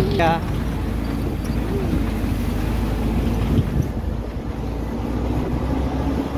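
Off-road tour jeep's engine running steadily as it drives along a rough dirt track, heard from inside the jeep.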